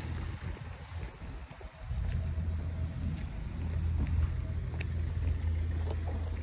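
Wind rumbling on the microphone, easing off briefly between about half a second and two seconds in.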